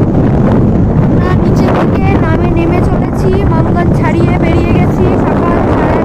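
Wind rushing and buffeting on the microphone of a moving motorcycle, with road and engine noise underneath, steady and loud throughout. A wavering voice with no clear words sounds over it.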